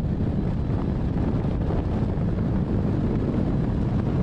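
Steady rush of airflow buffeting the microphone of a camera mounted on a hang glider in flight.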